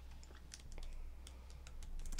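Typing on a computer keyboard: a run of quick, irregularly spaced keystrokes, faint, over a low steady hum.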